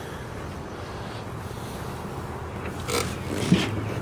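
Poulan Pro riding mower's engine running at a steady idle, with no growl now that the deck belt and blades have been replaced. A short knock and rustle of handling about three seconds in.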